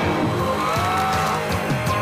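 Rock music with electric guitar, loud and steady, with a few sliding pitch bends.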